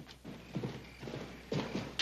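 Horse's hooves clip-clopping on packed dirt at a trot, an uneven run of dull thuds about every half second that grows louder near the end.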